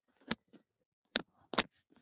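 Handling noise from a handheld microphone being picked up and held: a few sharp, separate clicks and knocks with silence between them.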